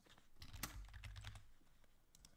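Faint typing on a computer keyboard: a few quiet, scattered key clicks, with a faint low rumble in the first half.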